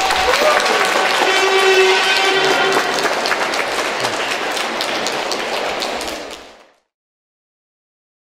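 A crowd applauding, many hands clapping. A long held tone sounds over the claps for the first few seconds. The applause fades out about six and a half seconds in.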